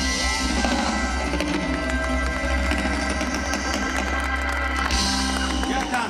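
Live band with acoustic guitars, keyboards and drum kit holding the closing chords of an Austropop song, drums and cymbals rolling under them; the music stops right at the end.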